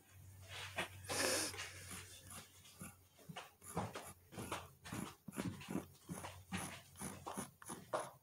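A dog panting and sniffing in quick, uneven breaths, about two or three a second, with a longer, louder huff about a second in.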